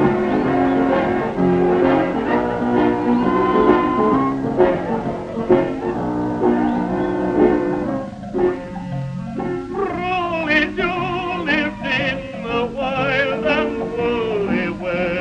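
Small saloon band of brass, reeds, fiddle and double bass playing a western-style tune, with the thin, narrow-range sound of an old film soundtrack. About ten seconds in, a wavering line with heavy vibrato comes in over the band.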